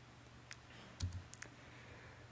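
A few faint, sharp clicks over quiet room tone. The loudest comes about halfway, with a soft low thump.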